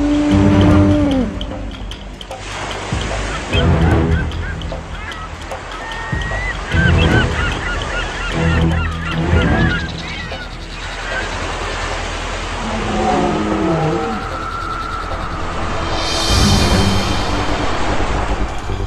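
Honking, bird-like calls over background music, with repeated low thuds every second or two.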